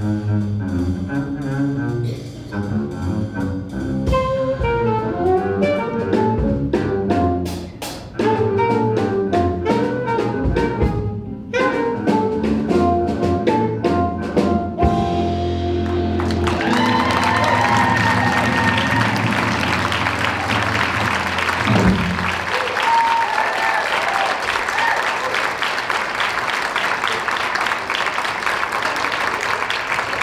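Small jazz group ending a tune: double bass played with the bow under drum-kit cymbals, guitar and saxophone, closing on a held chord. Audience applause takes over from about halfway through.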